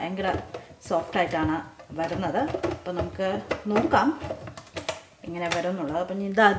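A woman talking, with a few light clicks in the second half from the plastic lid and handle of a food processor being handled.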